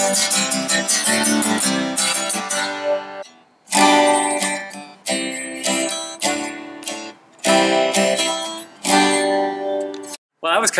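Cutaway steel-string acoustic guitar strummed through a G–C–D–C chord progression. It breaks off briefly about three and a half seconds in, then a beginner strums the same chords in short runs with small pauses at the chord changes.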